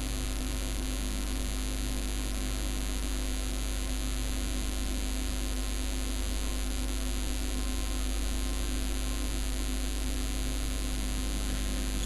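Steady electrical mains hum with hiss from the recording, unchanging throughout, with no other sound standing out.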